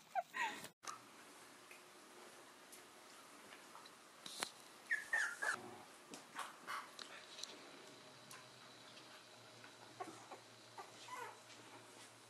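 A litter of young corgi puppies whimpering faintly, a handful of short squeaky cries around the middle and again near the end.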